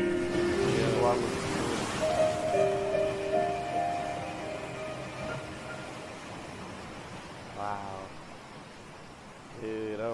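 The closing bars of a slow piano ballad: held piano and vocal notes ring on and fade away over the first few seconds, with a soft rushing hiss under them near the start.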